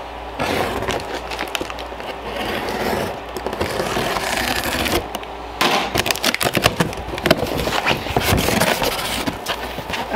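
A box cutter slicing along the packing tape of a cardboard box, a continuous scraping, then the tape and cardboard flaps being torn and pulled open with quick crackles and clicks after a short pause about halfway through.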